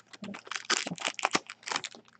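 Red foil trading-card pack wrapper crinkling and crackling as it is handled and the cards are slid out of it: a quick, irregular run of sharp clicks and rustles.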